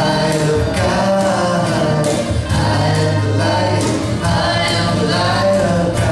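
Live band music: several voices singing together over acoustic guitars and hand percussion, with a steady beat.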